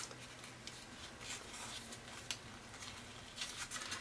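Faint, scattered rustles and light clicks of a folded paper pinwheel being handled and pressed together while the prongs of its mini brad are pushed down.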